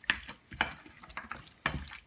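Hands massaging ginger and garlic paste into raw lamb shank pieces in a glass dish: a run of short squelches and clicks, about two a second, as the meat is squeezed and turned.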